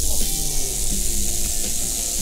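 Rattlesnake rattle buzzing in a continuous high hiss that starts suddenly, over background music.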